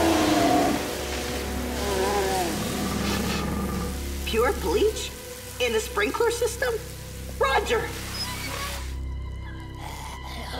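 Cartoon sound effects of overhead sprinklers spraying water down on a mold monster, a steady hiss that cuts off near the end. Over it the monster's voice gives gliding cries in the first seconds, followed by short vocal sounds, with music underneath.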